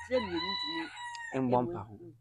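A rooster crowing once, a single drawn-out call of a little over a second, over a woman talking.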